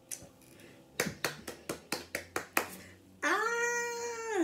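A quick run of about eight sharp clicks or claps, then one long drawn-out vocal call near the end, like a cat's meow, rising in pitch, holding, then falling.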